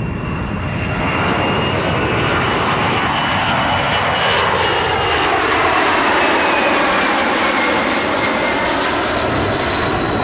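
Boeing C-17 Globemaster III's four turbofan engines on a low flyover: the jet noise swells over the first few seconds and peaks around the middle, with a whine that slides down in pitch as the aircraft passes.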